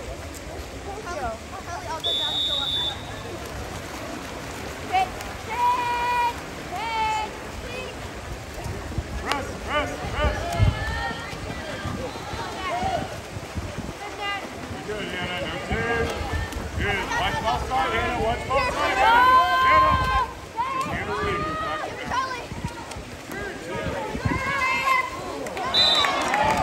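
Shouting voices from the poolside over the splashing of water polo players swimming, with a short high referee's whistle blast about two seconds in and another near the end.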